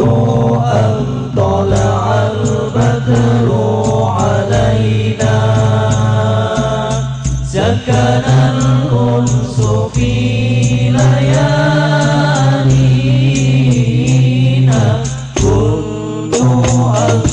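Banjari-style rebana ensemble performing: several male voices chanting a song together, over a continuous rhythm of hand-struck frame drums.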